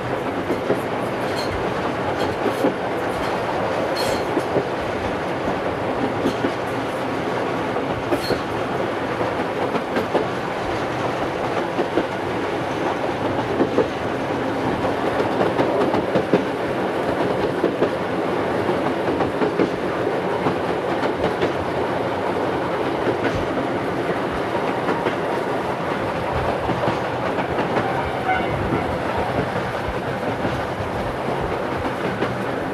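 Field recording of a JNR Class C62 steam-hauled train running steadily, its wheels and cars clattering along the track, played back from a 1971 vinyl LP.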